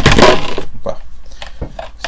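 Knife blade jabbed and scraped against a hard plastic helmet shell close to the microphone: a loud rough scrape in the first half-second, then a few light taps.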